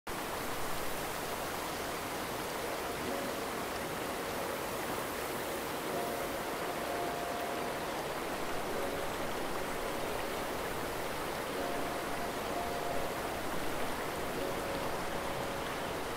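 Shallow river water running steadily over a gravel riffle, an even rushing hiss. Faint brief tones come through now and then.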